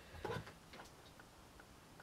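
Quiet room with a few faint, light ticks and one brief soft sound near the start.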